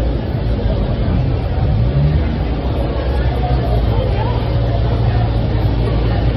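Busy street: many people talking at once over a steady low hum of road traffic.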